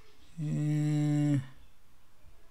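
A man's drawn-out hesitation sound, a single vocal 'hmm' held on one steady pitch for about a second.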